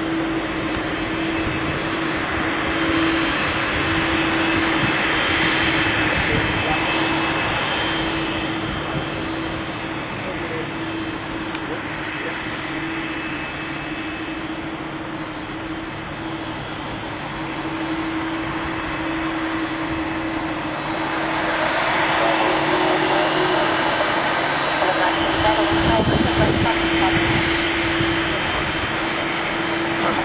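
Boeing 767 freighter's twin jet engines running at taxi power: a steady whine with high thin tones over a low hum and rushing noise, swelling louder twice as the aircraft passes.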